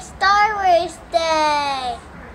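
A young boy singing short phrases, the last a long held note that slides down in pitch.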